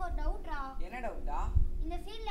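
A child's voice speaking with a high, strongly wavering pitch, with a few low thuds about one and a half seconds in.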